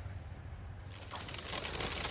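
A deer feeder's auger starting about a second in and running, pushing corn kernels out of its port: a steady, quiet rustling hiss full of small ticks.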